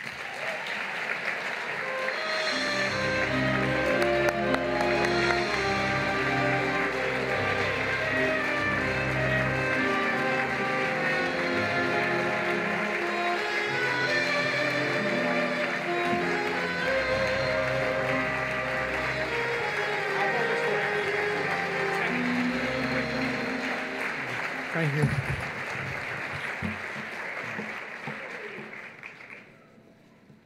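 Audience applauding while instrumental walk-on music plays. The music comes in about two seconds in and fades out near the end.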